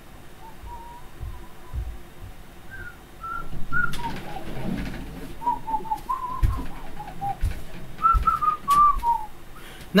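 A person whistling a simple tune softly, short notes stepping up and down, with a few soft thumps and some rustling of handling in the second half.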